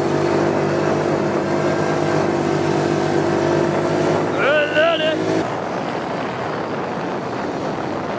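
Quad bike engine running steadily under way across sand, heard close from the rider's own machine. A short shout cuts in about four and a half seconds in. Near five and a half seconds the engine tone drops out, leaving a rushing noise like wind.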